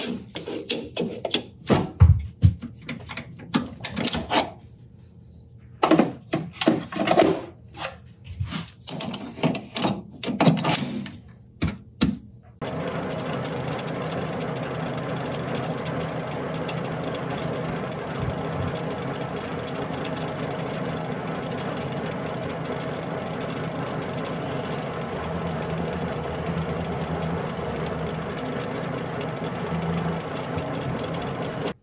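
Irregular metal clanks and knocks as a metal lathe is set up. About twelve seconds in the lathe starts suddenly and runs steadily, spinning a knurled rod in its collet chuck to turn the rod's end round.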